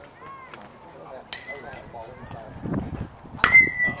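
Baseball bat striking a pitched ball for a base hit: one sharp, loud crack with a short ringing ping after it, about three and a half seconds in.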